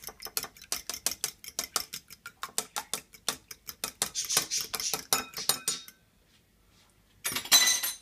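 A metal fork whisking a raw egg in a glass bowl: quick, regular clinks against the glass, several a second, stopping about six seconds in. A brief, louder clatter follows near the end.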